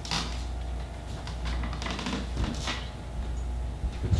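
Soft handling sounds of wet pretzel dough being placed and shaped on a parchment-lined baking sheet: a few brief rustles and scrapes, over a steady low hum.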